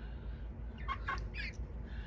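Young chickens chirping: a quick run of short, high peeps about a second in.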